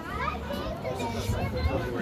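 Several people talking at once, children's high voices among them, over a low steady rumble.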